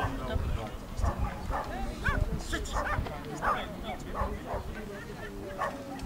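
A dog whining and yipping in short, high, repeated cries, about two a second.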